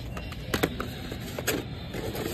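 Plastic blister-card toy car packages clacking and rattling as they are handled and flipped on the display, with two sharp clacks, about half a second in and again about a second and a half in, over a steady low hum of store background noise.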